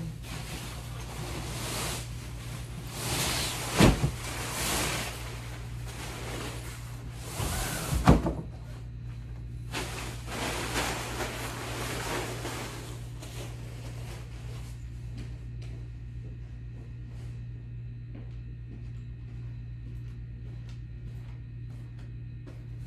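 Bedding rustling as it is pulled off a bed and bundled up by hand. There are two thumps, about four and eight seconds in, the second the loudest. The rustling dies away after about fifteen seconds, leaving a steady low hum.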